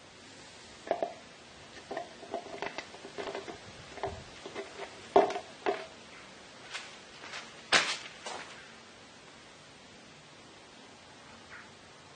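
Oil being poured from a plastic measuring jug into the gearbox of a Harrison M300 lathe apron: a run of irregular small splashes and knocks, the loudest a sharp knock about eight seconds in.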